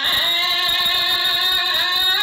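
A woman chanting smot, Khmer Buddhist sung poetry, holding one long wavering note that lifts slightly near the end.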